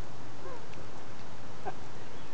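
Steady background hiss with a few faint, brief chirps.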